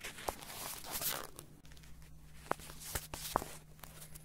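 Handling noise from a handheld camera moved around close to the head: rustling with several sharp clicks and knocks, over a faint steady low hum.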